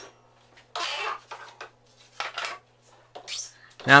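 Wood and tools being handled on a workbench: three short, noisy scraping or knocking sounds, about a second apart, over a faint low hum.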